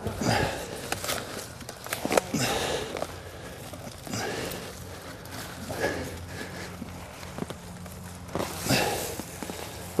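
Steel hosta trowel digging and prying through soil and thick, long-established hosta roots: a few scattered crunching, scraping strokes several seconds apart.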